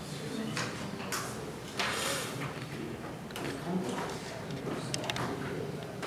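Low, indistinct voices murmuring in a room, with a few soft clicks and rustles.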